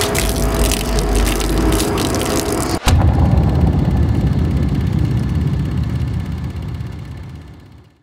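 Champagne pouring from a bottle and splashing onto a car's hood. About three seconds in it cuts off sharply, and bass-heavy music takes over, fading out to silence by the end.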